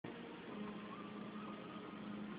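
Faint steady background hum and hiss with a thin held tone, unchanging throughout.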